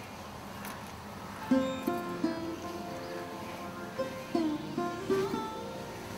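Instrumental song intro: a plucked string instrument plays a melody of separate notes, some bending in pitch, coming in about a second and a half in after a quiet start.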